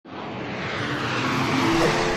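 An edited whoosh sound effect: a rushing swell that starts abruptly and grows louder, with a faint pitched tone on top, leading into a fast zoom transition.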